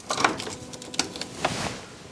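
Mains plug pushed into a wall socket and its cable handled: a few clicks and knocks, then a short rustle about a second and a half in.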